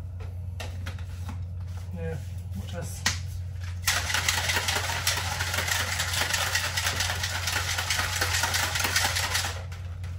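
Plastic shaker bottle with a creatine drink inside being shaken hard for about six seconds, starting about four seconds in, after a few light clicks. A steady low hum runs underneath.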